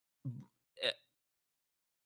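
Two brief, quiet vocal sounds from a person, about a quarter second in and just under a second in, such as a catch of breath or a clipped syllable.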